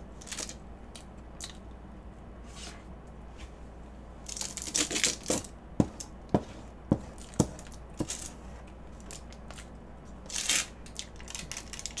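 Clear plastic cake film crinkling and rustling as it is handled, in two spells, with a few sharp clicks of a metal fork against a ceramic plate in between.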